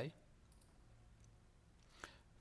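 Near silence: room tone, with a faint click of a computer mouse.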